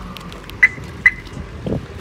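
Car remote-lock chirps: a parked car's horn or alarm sounder gives two short, high beeps about half a second apart as the key fob's lock button is pressed.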